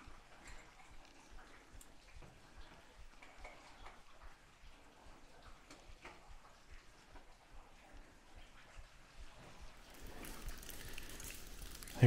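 Faint, quiet ambience with scattered small ticks, getting slightly louder near the end.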